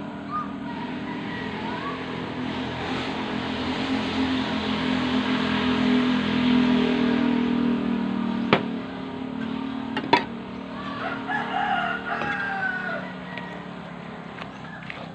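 Roosters crowing in the background, with a few short bending calls near the end. Under them a low steady hum swells over several seconds and then fades. Two sharp knocks come in the second half.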